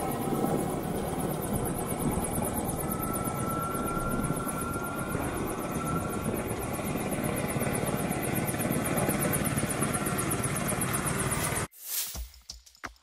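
Beta Technologies' Ava electric eVTOL prototype hovering low with its rotors running: a steady rushing noise with a fast, fine pulsing beat from the blades. It cuts off abruptly just before the end.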